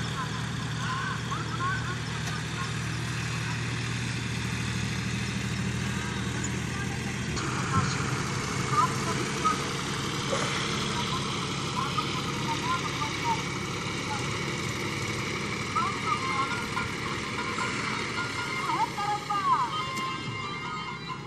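John Deere 5050 tractors' three-cylinder diesel engines running steadily while pulling implements across a field; the low engine hum is strongest for the first seven seconds or so, then eases. Short high chirps sound over it throughout.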